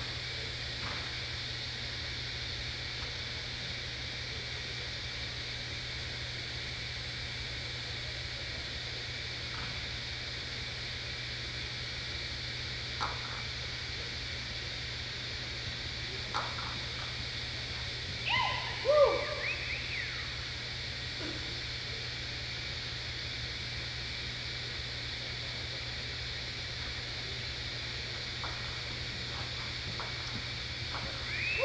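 Steady room tone of an indoor arena, a constant low hum under a faint even hiss. About two-thirds of the way through comes a brief cluster of short calls rising and falling in pitch.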